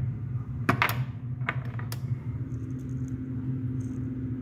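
A few sharp clicks and knocks as a glass pepper grinder is lifted off a countertop and handled: two close together about a second in, then two more a little later, over a steady low hum.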